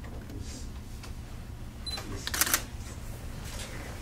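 Digital camera taking a photo: a short high focus-confirm beep just before halfway, then a quick run of shutter clicks, with another beep at the very end. A low steady room hum lies under it.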